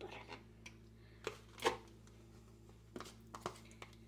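A few soft scrapes and taps as vegan butter is scraped out of a plastic tub into a steel pot of mashed potatoes. The loudest comes about one and a half seconds in.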